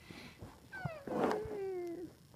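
A meow-like cry, gliding down in pitch and then held, slowly falling, for about a second, starting a little under a second in.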